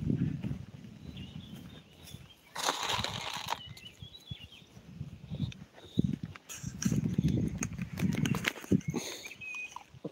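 Footsteps on a dry dirt and gravel bank, with the rubbing and knocking of a hand-held phone being carried, and a brief rush of rustling about two and a half seconds in.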